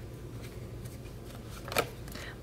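A tarot card drawn off the top of the deck: one brief papery swish near the end, over a faint steady low hum.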